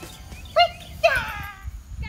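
A dog barking twice, the second bark longer and falling in pitch.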